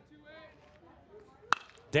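A baseball bat striking the ball once, about one and a half seconds in: a single sharp crack of hard contact, the hit that carries over the center-field wall. Faint crowd chatter sounds before it.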